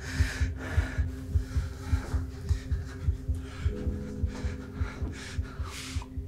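Suspense film score: a low, heartbeat-like bass pulse about three times a second under a steady droning hum, whose held notes change about two thirds of the way through.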